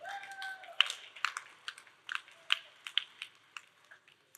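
A short high tone that slides slightly downward, followed by a scattering of irregular sharp clicks and taps, about a dozen over a few seconds.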